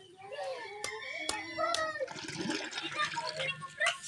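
Three sharp chops of a bolo knife cutting into a young coconut. About halfway through, coconut water starts pouring in a steady stream into a plastic pitcher.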